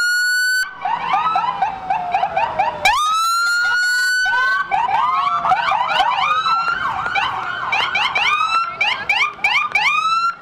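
Electronic sirens of several ambulances and emergency vehicles sounding at once, their fast up-and-down yelps and slower wails overlapping. Twice one siren holds a steady high tone, and one siren winds slowly down in pitch early on.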